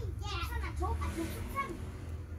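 Children's voices in the background, talking and playing in short bursts over a steady low hum.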